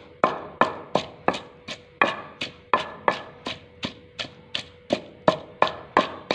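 Long wooden pestle pounding chopped onion and coriander in a terracotta kunda mortar, with steady even strokes about three a second.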